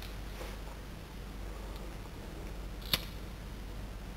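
A pocket lighter struck once, a single sharp click about three seconds in, to light a flame for shrinking heat-shrink tubing, over a low steady hum.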